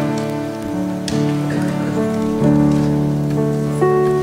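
Church band playing the instrumental introduction to a hymn on keyboard and acoustic guitars: held chords that change every second or so, with light strummed notes.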